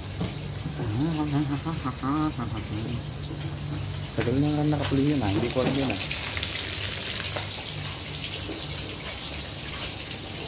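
Food frying in hot oil in a steel wok on a gas burner, a steady crackling sizzle that becomes the main sound from about six seconds in.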